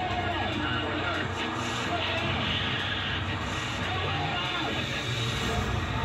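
Background music under a man's urgent shouted call of "Wave it off!"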